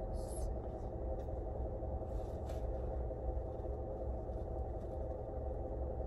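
Steady low rumble and hum of a car cabin, with a few faint clicks of a fork against a takeout bowl.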